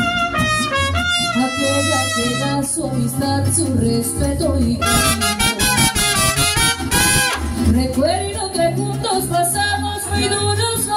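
Live mariachi band playing, with trumpets carrying the melody over repeated deep bass notes.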